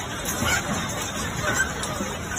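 Indistinct voices of several people, no clear words, over a steady rushing noise.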